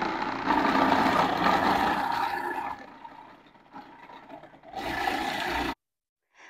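Electric food processor running with a steady motor whine while carrots are pushed through the feed chute onto the shredding disc. The noise drops low about halfway through, comes back loud for a moment near the end, then cuts off suddenly as the motor is switched off.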